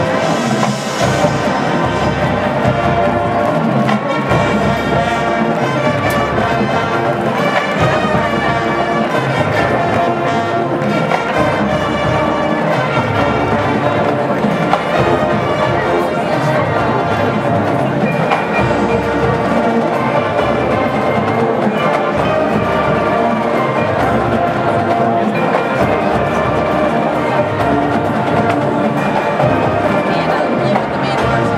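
College marching band playing, brass-heavy with saxophones and sousaphones, loud and continuous.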